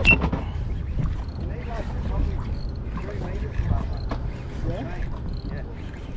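Steady low rumble of wind and water around a small boat, with faint voices speaking in the background.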